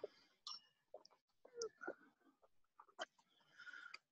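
Near silence broken by a handful of faint, brief clicks and small noises.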